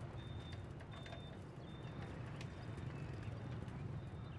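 Faint outdoor background: a steady low rumble with scattered light clicks and a few short, thin high chirps.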